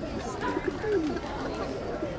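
A flock of feral pigeons cooing, with people's voices in the background.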